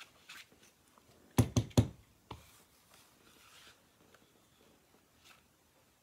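Braided border paper punch clacking as it is pressed through cardstock: three quick sharp clacks about a second and a half in, then a single softer one. Faint handling clicks around them as the strip is lined up in the punch.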